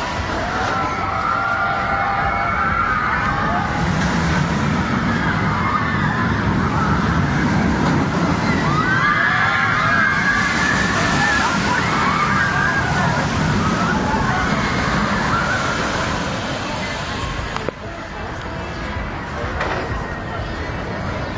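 Boomerang steel shuttle roller coaster train running the track: a loud, steady rumble of the wheels on the rails, with riders screaming over it, dropping off near the end.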